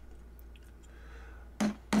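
A plastic-faced mallet gives one sharp knock about a second and a half in, hammering down the bent-back prongs of a brass strap element on a leather strap. Before it there are only faint handling sounds over a low hum.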